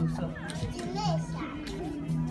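Several people talking, a child's voice among them, over background music that holds a steady low tone.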